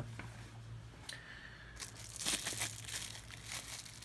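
Pink plastic bubble-wrap packaging crinkling and rustling as it is handled and opened to take out a small Bluetooth module, starting about a second in and densest midway through.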